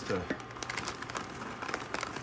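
A clear plastic bag crinkles as the last pecans are shaken out of it into a pan of boiling praline syrup. It makes a quick run of small crackles.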